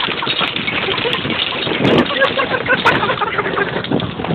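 Golf cart jolting along a rough dirt trail: a steady, loud rush of ground and wind noise with scattered clicks and knocks from the bouncing cart, and people's voices mixed in.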